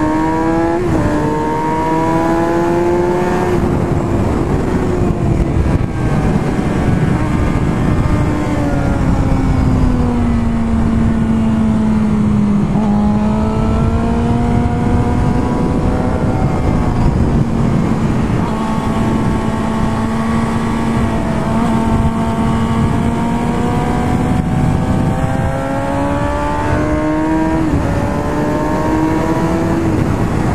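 2006 Suzuki GSX-R inline-four with a Yoshimura exhaust, heard onboard at track speed over a steady rush of wind noise. The engine note climbs with a gear change about a second in. It then falls gradually as the bike slows, holds steady for a long stretch, and climbs again near the end.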